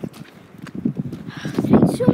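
Footsteps on a gravel farm track, an irregular string of short scuffs and clicks, with a voice briefly near the end.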